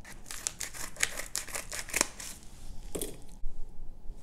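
Trading cards and their plastic holders and packaging being handled: a run of light clicks and rustles, with a sharper click about two seconds in and another near three seconds.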